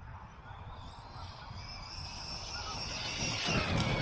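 Losi LST 3XLE brushless electric RC monster truck driving across grass toward the listener. Its motor whine and tyre noise grow steadily louder, with a falling whine near the end as the throttle eases, over a steady low rumble.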